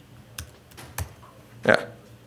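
A few separate keystrokes on a computer keyboard, sharp single clicks with gaps between them, the clearest about a second in, as a line of code is edited and run.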